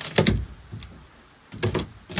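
Wooden boards knocking and clattering against each other as demolition lumber is handled: a burst of hard knocks right at the start, then a second cluster of knocks and scraping near the end.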